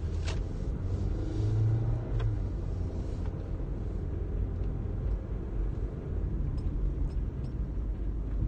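Steady low rumble of a car's engine and road noise inside the cabin, with a few faint clicks.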